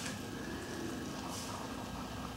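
Electric potter's wheel spinning fast with a steady hum, with a couple of brief, faint wet sounds from hands and a sponge on the wet clay.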